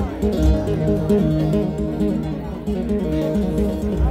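Live music with plucked guitar lines over deep bass, heard through a concert sound system from within the crowd.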